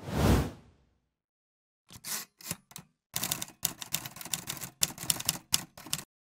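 A short, deep whoosh-like hit opens, then a pause. About two seconds in come a few single typewriter keystrokes, followed by a fast run of mechanical typewriter key clacks with brief gaps.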